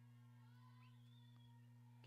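Near silence: a steady low electrical hum, with faint, indistinct sounds above it.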